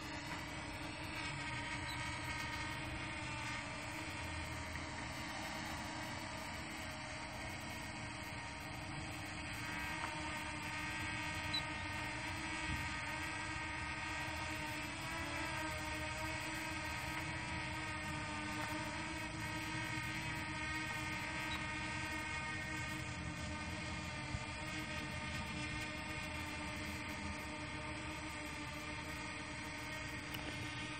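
Yuneec Breeze quadcopter hovering and slowly yawing: its four propellers give a steady multi-tone whine whose pitch wavers slightly.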